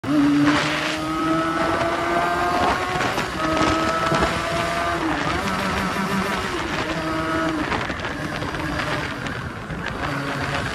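Benelli 300 parallel-twin motorcycle engine accelerating hard, its pitch climbing in each gear and dropping back at each upshift, about four times. Road and wind noise run underneath.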